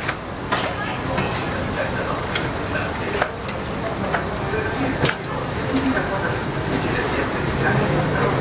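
Dough deep-frying in a wide round pan of hot oil, a steady sizzle, with a few sharp clinks as the perforated metal skimmer works the pan.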